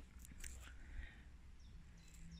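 Near silence: faint woodland ambience with a few small handling ticks and a faint high chirp from a small bird near the end.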